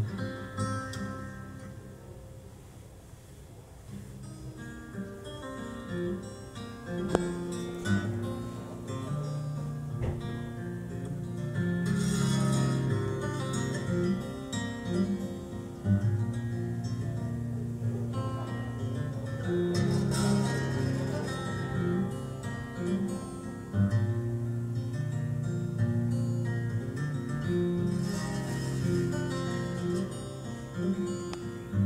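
Solo acoustic plucked-string instrumental introduction to a song: single notes and chords picked and left ringing. It starts softly and fills out about six seconds in.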